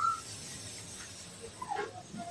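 A pause in conversation: faint, steady background hiss, with the last rising syllable of a man's voice at the very start and a couple of faint, short sounds near the end.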